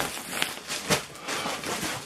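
Fabric rustling as a hooded jacket is handled and moved about, with a couple of brief ticks about half a second and a second in.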